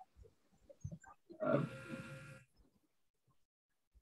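A person's drawn-out, hesitant "uhh" over a video call, starting about a second and a half in and lasting about a second, with a few faint ticks before it and otherwise near silence.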